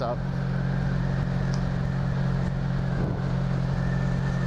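1983 Honda V65 Magna's 1100 cc V4 engine running at a steady cruising speed, a constant low hum with no revving.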